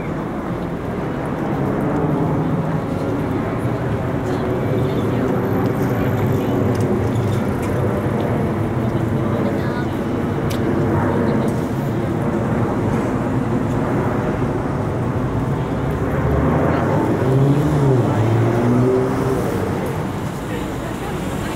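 City street ambience: car traffic running with passers-by talking, and a voice standing out near the end.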